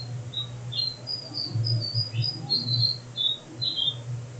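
Small birds chirping in the background: a quick run of short, high chirps throughout, over a low hum.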